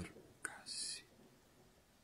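A man's voice dropped to a whisper: a small mouth click, then a short breathy hiss like a whispered 's'.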